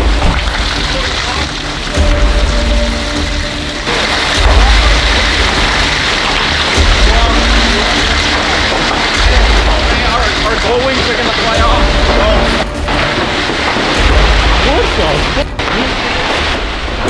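Heavy rain and wind of a severe thunderstorm on a metal shop building: a loud, steady roar with low rumbling surges every couple of seconds. Music is mixed in.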